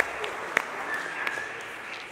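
Congregation applauding, the clapping dying away toward the end.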